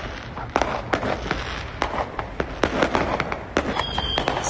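Firecrackers and fireworks going off in rapid, irregular bangs, several a second, over a steady low rumble.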